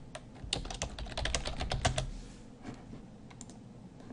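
Typing on a computer keyboard: a quick run of keystrokes for about two seconds, then a few scattered clicks near the end.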